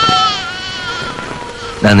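A voice crying in one long, high, wavering wail that slowly falls and fades, with speech starting again near the end.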